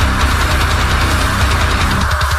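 Loud heavy metal music with a dense, fast-pulsing low end.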